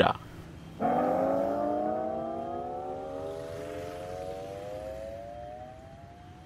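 An added comedy sound effect: one pitched tone with overtones that starts abruptly about a second in, then glides slowly upward in pitch as it fades away.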